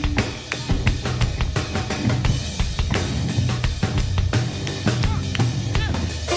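Live band playing an instrumental passage, the drum kit busy with bass drum, snare and cymbal hits over electric bass and piano.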